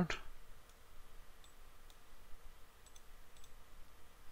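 Faint computer mouse clicks, about five scattered through the seconds, over quiet room tone.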